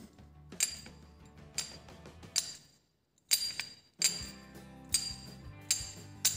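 Scooter variator worked by hand: the ramp plate sliding up and down in its metal housing, giving a series of light, irregular metallic clicks and clinks, some with a brief high ring, about eight in six seconds. The plate moves freely.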